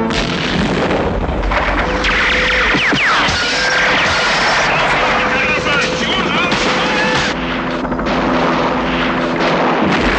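Movie battle sound of gunfire and explosions: a dense, continuous din with many sharp cracks and booms, over a steady held tone of film music.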